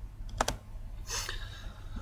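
Laptop keyboard clicked to move on a slide: a quick double click about half a second in, then a short rustle, over a steady low hum.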